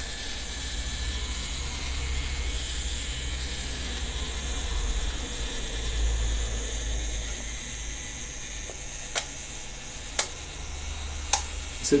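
Leica M2's clockwork self-timer running with a steady whirr, then the shutter releasing with a sharp click about nine seconds in. Two more light mechanical clicks follow.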